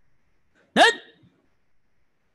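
A man's voice calling out one short, sharp count in Korean about a second in, as in a drill count.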